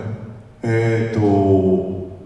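A man's voice over a hall microphone, with a short sound and then a long, drawn-out hesitation sound held on a fairly steady pitch.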